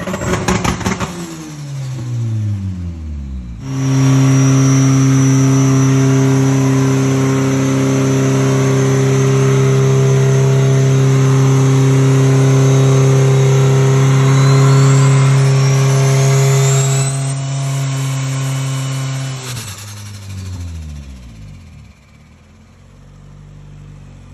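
Turbocharged Honda B18B four-cylinder running in a Civic, held at steady high revs for about fifteen seconds: it starts abruptly after a few seconds of revs dying away, and near the end the engine speed falls and it winds down.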